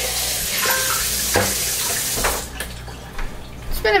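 Water running, like from a tap, in a steady hiss that stops about two and a half seconds in, with a few light knocks.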